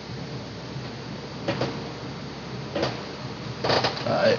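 Handling noises: three short knocks or scrapes, about a second apart, as objects are moved about, over a steady background hiss.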